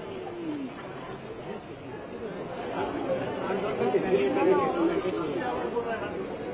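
Crowd chatter: several people talking over one another, with no single clear speaker.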